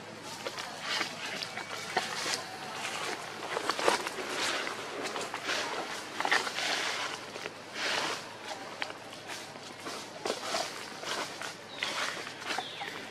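Irregular rustling and crunching of dry leaves on dirt ground, from movement and steps through the leaf litter.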